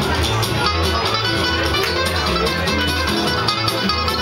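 Live acoustic band playing a tune: strummed acoustic guitar over plucked double bass, whose low notes move steadily underneath.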